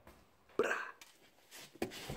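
Mostly quiet, with one short breathy vocal sound from a man about half a second in, such as a quick exhale or chuckle, then the start of a spoken word near the end.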